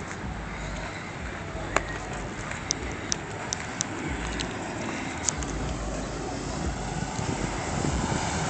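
A lowrider sedan rolling slowly closer, its engine and tyre noise growing gradually louder. Wind rumbles on the microphone in stretches, and there are a few light ticks.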